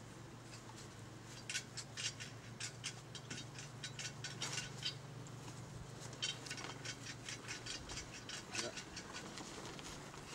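Knife blade scraping at the notch of a wooden bow-drill fireboard, working the smouldering ember free. It comes as two runs of short, quick scrapes, several a second, with a pause of about a second in the middle.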